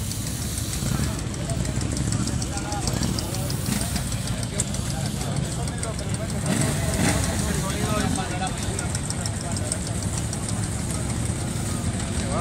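Motorcycle engines running steadily at a crowded motorcycle rally, under the murmur of many people talking.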